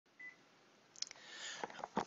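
A brief faint high electronic beep, then a click about a second in and a faint hiss that swells with a few small clicks.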